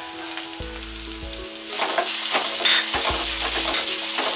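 Sliced onions and curry leaves sizzling in oil in a nonstick pan while being stirred with a wooden spatula. The sizzle gets noticeably louder a little before halfway through.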